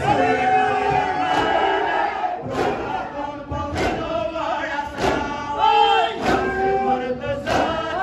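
Male voices chanting a noha (mourning lament) in long, wavering lines, with men slapping their chests together in a steady beat, a sharp slap a little more than once a second.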